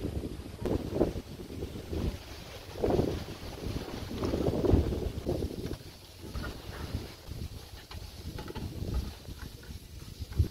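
Wind buffeting the microphone in gusty low rumbles, strongest in the first half. A few faint metallic clicks and knocks come in the second half as a bicycle and number plate are fitted onto a tow-hitch bike carrier.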